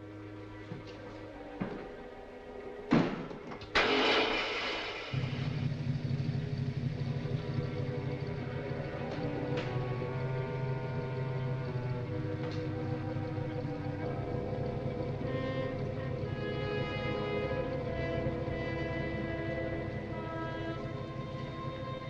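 An old taxi's engine starting and then running at a steady low idle from about five seconds in, under background film music. A sharp knock and a short noisy burst come just before the engine settles.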